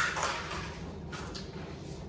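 Faint rustling and handling noise as paper and packaging are moved about, with a couple of soft scrapes a little after a second in.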